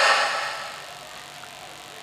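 A pause in amplified speech: the last word's echo through the public-address system fades away over about a second, leaving a steady faint hiss of room and PA noise.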